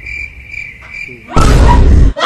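Cricket chirping in evenly spaced pulses, a chirp about every half second. About a second and a half in, it is cut off by a sudden loud, bass-heavy thud that lasts under a second.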